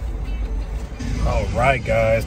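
Background music fading out, then a man's voice starting to speak about a second in.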